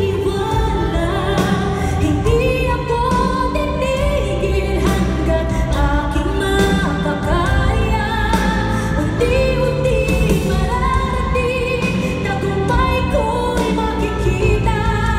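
A woman singing a pop song live into a microphone, with band accompaniment of keyboards and bass, heard through a concert hall's sound system.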